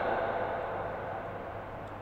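A pause in speech: the reverberation of a voice through a microphone and loudspeakers dies away in a large hall, leaving a low steady hiss and hum.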